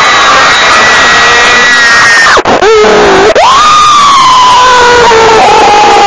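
Very loud, overdriven high-pitched cartoon scream: one long held cry, a short lower cry about two and a half seconds in, then a second long cry that slowly sinks in pitch.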